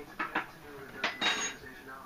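Kitchenware clinking and clattering: two light clinks near the start, then a louder clatter about a second in.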